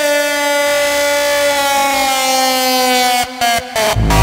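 Intro of a Japanese hardcore (J-core) track: one long held synth note with a bright stack of overtones, gliding slowly down in pitch. Near the end it is chopped into two quick stutters, the build-up just before the kick drums drop.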